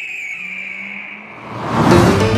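A car rushing past, its whoosh swelling to the loudest point near the end, after a high whine that falls slowly in pitch.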